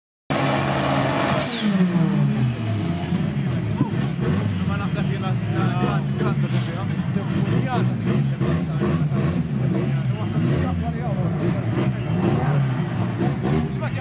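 Turbocharged Toyota Starlet drag car doing a burnout: the engine is held at high revs with the front tyres spinning, the revs rising and falling.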